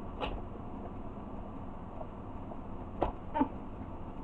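Hands working at a tight-fitting cardboard box lid, with a short sharp scrape or knock just after the start and another about three seconds in, over a low steady background hiss.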